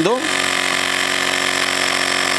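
Battery-powered portable tyre-inflator compressor running steadily, pumping up an e-bike tyre as the pressure climbs. It gives an even motor hum with a hiss over it.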